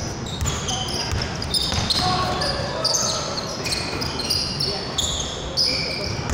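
Basketball game on a hardwood court: many short, high sneaker squeaks as players cut and stop, with a ball bouncing.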